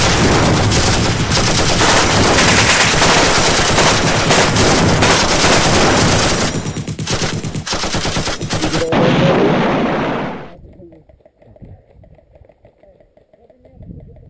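Dense, rapid automatic gunfire, many shots running together like machine-gun fire, thinning to separate shots later on. It cuts off suddenly about ten and a half seconds in, leaving only faint sound.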